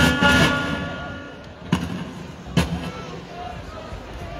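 Live amplified music through the concert PA: a held chord rings out and fades over about a second and a half. Two sharp knocks follow, about a second apart.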